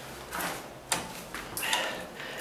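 Handling noise from a wall light switch and its copper wires being picked up and worked by hand: a few short rattles and scrapes, with a sharp click about a second in.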